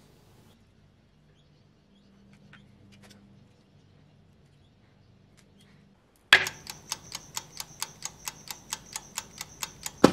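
Near silence with a faint low hum for about six seconds. Then a steady, even ticking starts suddenly, about five or six ticks a second, over a thin high tone.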